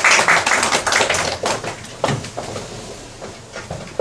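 A small audience clapping, dense at first and thinning out over the following few seconds.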